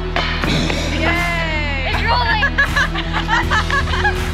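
A thrown disc hits the chains of a disc golf basket with a brief metallic clatter, followed by a long cry falling in pitch and excited shouting from a few players. Background music plays throughout.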